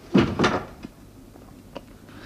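A door shutting: a heavy wooden thud with a second knock about a third of a second later, followed by two faint clicks.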